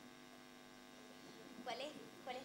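Faint steady electrical hum, with a voice starting quietly near the end.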